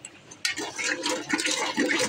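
Wooden hand churner spun in a steel pot, whisking a thick besan-and-yogurt batter: wet, slapping churning with small clatters, starting about half a second in.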